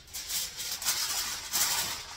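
Sheet of aluminium foil crinkling and rustling as it is spread over a glass baking dish and pressed down around its rim, an uneven crackle with louder surges.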